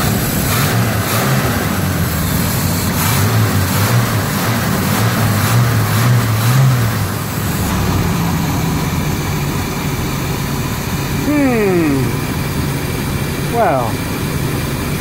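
Chevrolet 454 big-block V8 revved by hand at the carburettor throttle for several seconds, then dropping back to a steady idle about eight seconds in. It runs without backfiring on its corrected plug-wire firing order.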